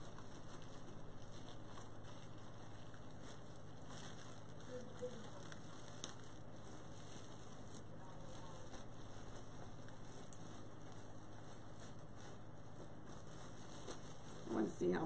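Clear plastic bag crinkling and rustling as hands work a stuffed decoration out of it. The crinkling is soft and irregular, with a sharper click about six seconds in.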